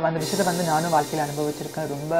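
A woman talking, with a steady high hiss that cuts in abruptly just after the start and runs on under her voice.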